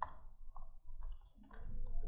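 A few faint, short clicks, about half a second apart.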